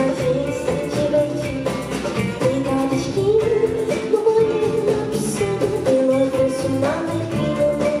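A live pop-rock band plays a song: electric guitars, bass, drums and keyboard, with a held, wavering lead melody line, likely a woman's voice singing, over the steady groove.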